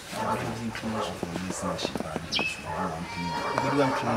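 Male voices talking, with no clear sound besides the speech.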